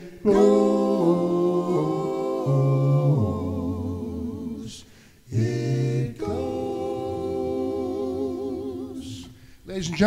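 Five-man a cappella vocal group singing close harmony without instruments: two long held chords with a short break about five seconds in. The second chord wavers with vibrato and dies away near the end as the song finishes.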